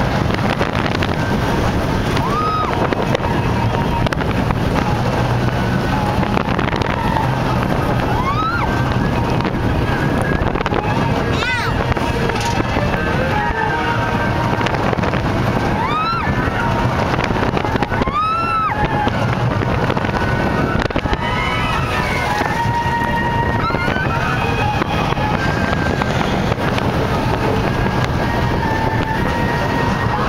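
Onboard a steel roller coaster in motion: a steady rush of wind and running noise, with riders screaming and whooping several times.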